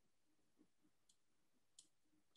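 Near silence with a few faint, brief clicks, the clearest about a second in and just before the end.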